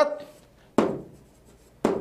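Chalk writing on a chalkboard: two short strokes about a second apart, each starting with a sharp tap and fading quickly.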